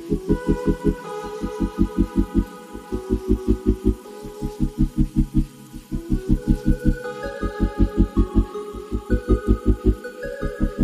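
Instrumental background music: a low note pulsing about seven times a second in phrases with short breaks, under sustained higher tones that step from pitch to pitch.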